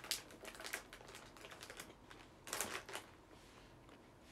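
A run of close, irregular clicks and rustles near the microphone, with a louder rustling burst about two and a half seconds in.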